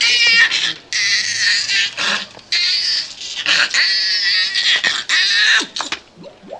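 A man making vocal sound effects: about five high-pitched, wavering squeals in quick succession, cat-like in character.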